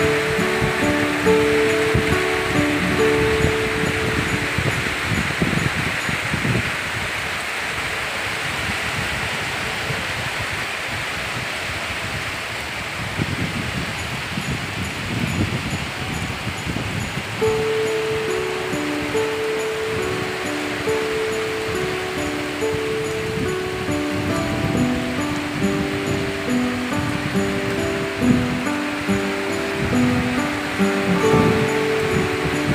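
Heavy rain falling steadily, a continuous hiss. Background music of held melodic notes plays over it at the start, drops away for a stretch in the middle, and returns from just past halfway.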